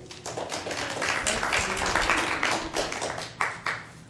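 Audience applause: many hands clapping at once, building quickly, then thinning to a few last separate claps near the end.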